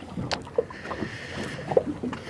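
Water lapping and splashing against a small boat's hull, with wind on the microphone and a sharp knock about a third of a second in.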